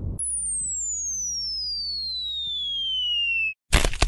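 A single whistle tone sliding steadily downward in pitch for over three seconds, the cartoon falling-whistle sound effect, over a faint low hum. It cuts off suddenly, and a brief loud burst of noise follows near the end.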